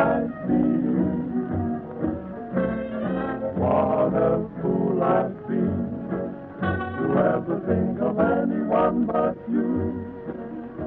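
Dance band music from a 1939 radio broadcast, thin and muffled on a very poor-quality old recording.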